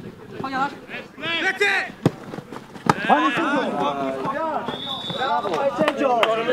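Men's voices calling out across a football pitch, with two sharp thuds of a football being kicked, about two and three seconds in, and a short, steady high whistle near the end.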